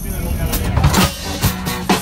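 A live band playing on between sung lines, with scattered strums or hits over the low rumble of the moving tram. A voice comes back in near the end.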